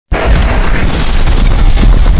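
Loud intro sound effect: a deep boom that starts suddenly and runs on as a heavy bass rumble with faint crackling.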